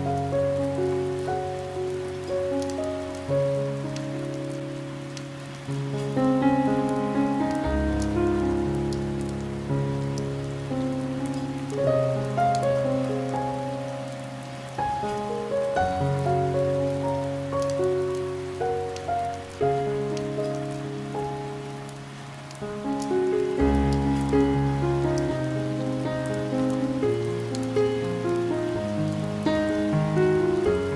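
Slow, gentle piano music of single notes over held low chords, laid over steady rain falling on window glass with fine drop ticks.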